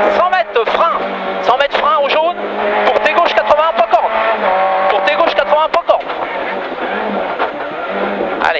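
Renault Clio Ragnotti rally car's four-cylinder engine heard from inside the cabin under hard acceleration. The revs climb and drop with each gear change, hold steadier through the middle, and ease lower near the end.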